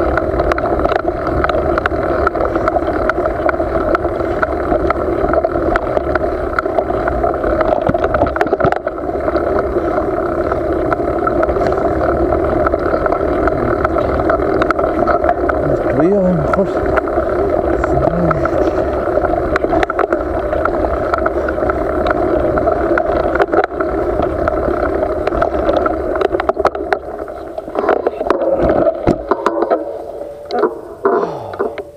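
Mountain bike in motion on a dirt trail: a steady rush of wind and rolling noise at the camera, with small rattles and clicks from the bike throughout.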